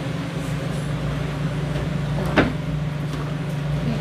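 A steady low mechanical hum over a rumbling background, with one sharp click a little past halfway.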